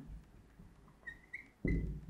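Dry-erase marker squeaking on a whiteboard as words are written: short, faint, high squeaks about a second in and again near the end. A low, dull knock comes just before the last squeak.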